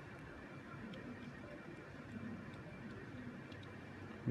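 Faint handling sounds: a few light ticks of small plastic stationery being handled, over a steady low room hiss.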